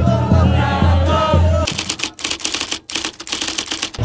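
Sufi dhikr: a group of men chanting in unison over a steady, low drum beat. About halfway in the chant gives way to a fast, even run of sharp percussive beats.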